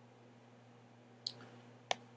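Two sharp computer mouse clicks, about two-thirds of a second apart, over a faint steady electrical hum.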